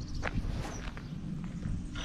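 A few scattered footsteps on a sandy dirt and gravel surface.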